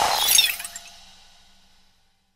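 End of an electronic music outro: a bright, glassy shatter-like sound effect about a third of a second in, glittering and fading out by about a second and a half.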